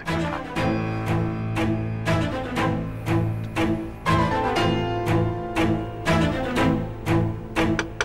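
Background drama score led by low bowed strings, with a steady pulse of notes about two a second.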